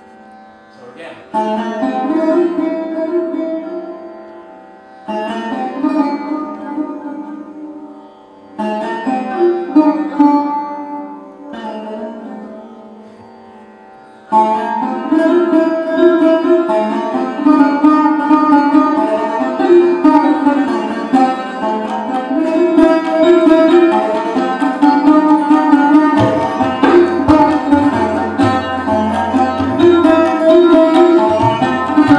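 Sarod played solo: three short plucked phrases, each struck and left to ring and fade, then from about halfway a continuous stream of plucked notes over ringing sympathetic strings. These are fragments of a traditional gharana composition built on phrases that approach and pull back.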